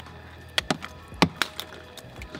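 Dungeness crab half being cleaned by hand: a handful of short, sharp cracks and snaps as the gills and shell pieces are pulled and broken off.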